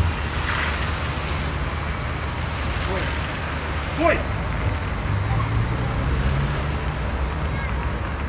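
Urban road traffic at a street intersection: a steady low rumble of passing cars' engines and tyres. A brief rising vocal sound comes about four seconds in.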